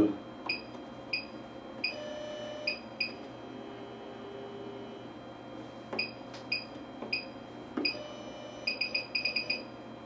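Short electronic key beeps from a DVR, one per button press, as the PTZ camera is tilted up and down from its control menu. They come singly and irregularly at first, then in a quick run of about seven near the end.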